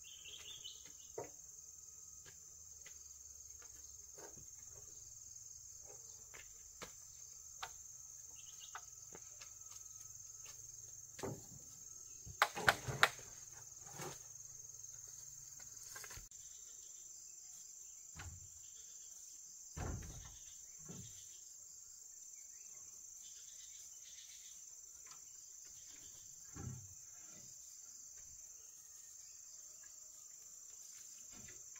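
Insects chirring steadily in one high band, with scattered wooden knocks and low thuds as a long wooden pole is lifted and set upright in the ground; the loudest knocks come in a quick cluster about halfway through.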